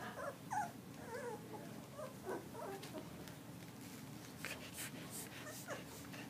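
Young puppies squeaking and whimpering as they play-fight, a string of short, high yips and whines in the first half. A few soft scuffs follow near the end.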